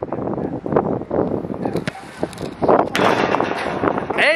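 Wind rumbling in gusts on the microphone, with a few sharp thumps.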